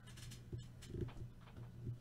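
Faint handling sounds of a small white box being shaken and tapped by hand to work loose a trading card stuck inside it. There are a few soft knocks and scuffs about half a second and a second in, over a steady low hum.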